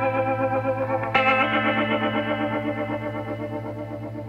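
Background music: sustained electric guitar chords with a wavering chorus effect. A new chord is struck about a second in and slowly fades.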